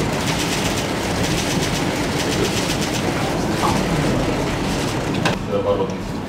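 Many press camera shutters clicking in rapid bursts over the steady hubbub of voices in a crowded room.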